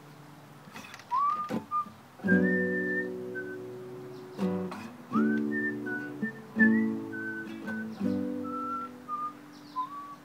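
Nylon-string classical guitar fingerpicking a sequence of chords, with a whistled melody over it, its notes sliding up into pitch. The guitar comes in about two seconds in, with fresh chords struck every second or two.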